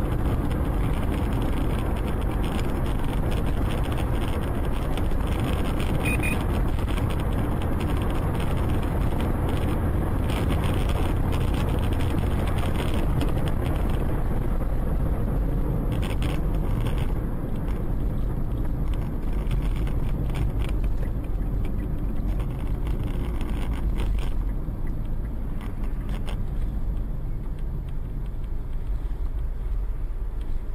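Steady road, tyre and engine noise heard from inside a moving car, with a heavy low rumble, growing a little quieter in the last few seconds as the car slows.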